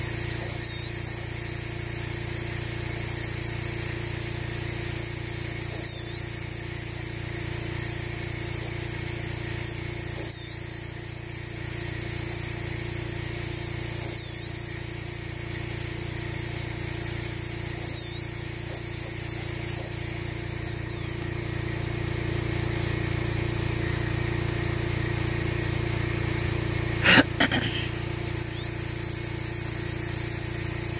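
High-speed rotary carving drill running with a steady high whine while it drills a row of small holes through a goose eggshell. Each time the bit bites into the shell, the pitch dips briefly and recovers, every second or two. A sharp knock about 27 seconds in.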